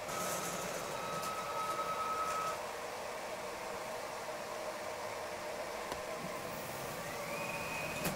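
Stepper motors of a 5-axis 3D printer prototype moving its axes: a steady whine for the first couple of seconds, then a whine that rises in pitch near the end as a motor speeds up.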